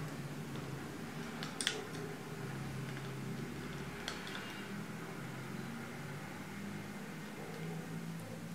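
Quiet handling of a silicone sealant cartridge as its nozzle lays beads onto a wooden frame under a net: two brief faint clicks, over a steady low background hum.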